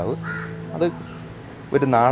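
A man talking, breaking off for over a second in the middle. A bird calls briefly in the background during the pause.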